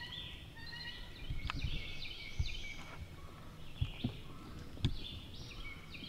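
Songbirds chirping and trilling continuously, with a few light clicks and knocks scattered through.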